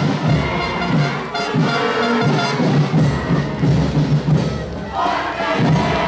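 Parade band music with brass and drums, over a crowd cheering and shouting; the shouting grows stronger near the end.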